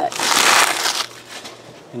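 Torn foil trading-card pack wrappers being gathered up by hand, crinkling and rustling in one loud burst of about a second.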